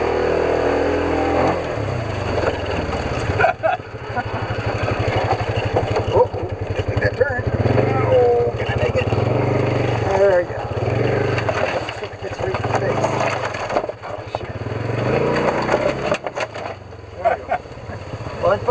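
Polaris side-by-side engine running at low speed, swelling and easing with the throttle over a rough trail. Branches and brush scrape and snap against the machine as it pushes through.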